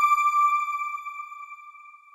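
A single bell-like electronic chime from a TV channel's logo sting: one clear pitched tone that fades slowly away.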